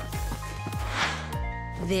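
Cartoon background music with a brief swoosh about a second in, as the scene changes; a voice begins near the end.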